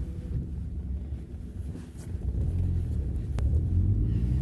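Car driving, heard from inside the cabin: a steady low road-and-engine rumble that grows louder about two-thirds of the way through. A single brief click comes near the end.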